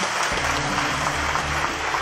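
A large seated audience applauding: a steady, even clapping.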